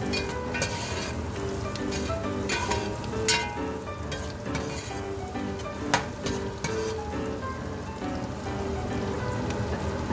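Red onions, lemongrass and chilies sizzling in hot oil in a stainless steel pot as a metal spoon stirs them. Several sharp clinks of the spoon against the pot.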